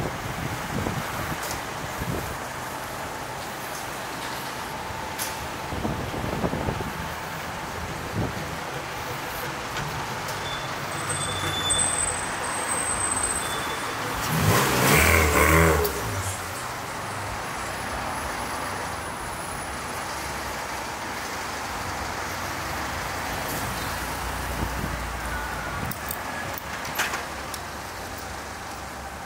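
City street traffic at night, a steady hum of road noise. About halfway through, a motor vehicle passes close by for a couple of seconds, with a deep rumble and a wavering engine tone, the loudest moment.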